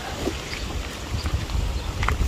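Wind buffeting a handheld camera's microphone: an uneven, gusty low rumble with a few faint clicks.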